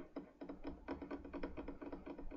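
Faint, rapid, uneven run of small clicks, about seven a second, at a computer.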